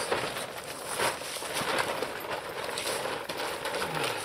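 A fabric shelter tent's door flap being pulled back and lifted by hand: the fabric rustles and flaps irregularly, with scattered light knocks.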